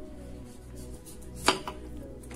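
Kitchen knife cutting through squash on a wooden cutting board, with one sharp knock of the blade on the board about one and a half seconds in. Faint background music underneath.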